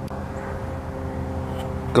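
A distant engine droning steadily, a low rumble with a held hum, slowly growing louder.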